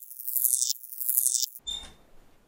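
Logo-intro sound effects: two high, hissy swishes, each falling in pitch, then a short knock with a brief high ring near the end.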